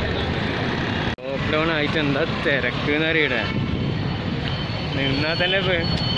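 Someone talking over steady street traffic noise, with a brief abrupt cut in the sound about a second in.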